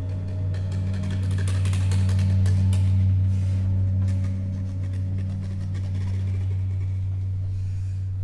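Contemporary chamber ensemble holding a steady low drone, with many soft, scattered clicks and taps above it in the first half.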